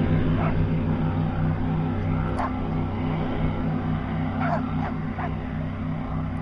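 V8 speedboat engine running at speed, a steady pulsing low drone that slowly fades as the boat moves off. A dog barks several times over it.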